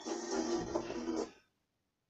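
Music playing through a television's speakers, cutting off abruptly about one and a half seconds in, leaving silence.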